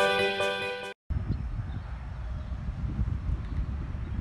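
Guitar background music fading out, a sudden cut to silence about a second in, then wind buffeting a phone microphone: a low, gusty rumble.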